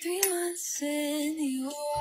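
A woman singing a short snatch of a song: two long held notes, the second lower than the first.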